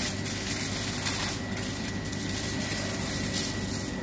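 Aluminium foil crinkling in short bursts as it is unfolded by hand, over a steady machine hum with a thin high whine.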